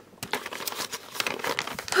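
Crinkling and rustling of a sheet being handled close to the microphone, a dense run of irregular crackles starting about a quarter second in.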